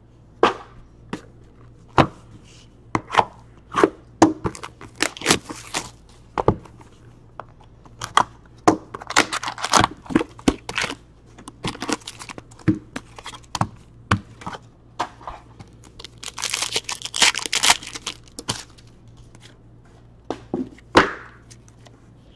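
Trading cards and their foil pack wrappers being handled: scattered clicks and taps of cards being flipped and set down, with a stretch of wrapper crinkling and tearing about sixteen seconds in.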